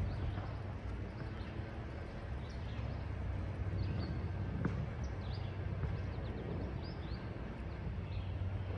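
Birds chirping now and then, short high calls over a steady low outdoor rumble, with a single click about halfway through.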